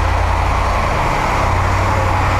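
Military truck's engine running with a loud, steady low rumble as the truck drives up close alongside.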